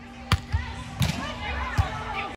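Hands striking a volleyball: several sharp slaps and thuds, the loudest about a third of a second in, with players' voices calling out in the second half.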